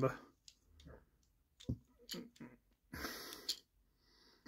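Scattered light clicks and handling noise from the hard plastic parts of a dinosaur combiner robot toy as they are moved and fitted together, with a short rustling stretch about three seconds in.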